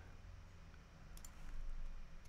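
Faint clicks from a computer mouse wheel scrolling, about a second in, over a low steady room hum.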